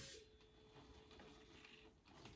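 Near silence: room tone with a faint steady hum that stops near the end.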